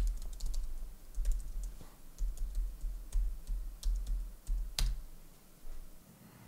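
Typing on a computer keyboard: irregular key clicks with dull low thumps, a sharper click at the very start and another a little before the end.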